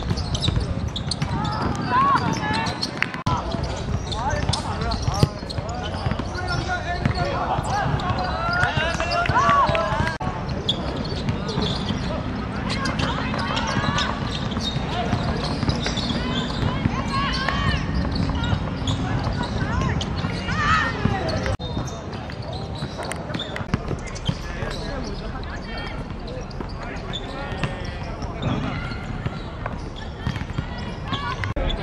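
Women footballers shouting and calling to one another across the pitch, with scattered sharp thuds of the ball being kicked.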